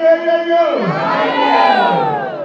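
One voice holds a long sung note through a microphone, and about three-quarters of a second in a group of voices breaks in with loud shouts and cheers that slide up and down in pitch.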